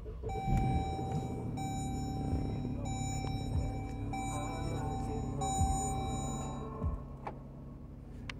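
2015 Jeep Grand Cherokee engine starting and idling, heard from inside the cabin. Over it the dashboard's electronic warning chime sounds five times in a row, each tone a little over a second long, and stops about seven seconds in.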